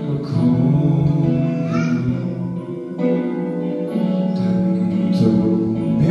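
A man singing a worship song live into a microphone, accompanied by acoustic guitar, with long held notes; one phrase ends and the next begins about three seconds in.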